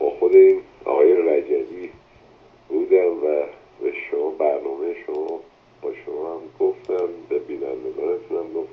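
A caller speaking over a telephone line, the voice thin and narrow in tone, with a couple of short pauses.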